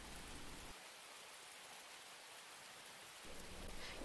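Faint, steady hiss of room tone and recording noise in a pause of dialogue. The low hum under it drops out about a second in and comes back near the end.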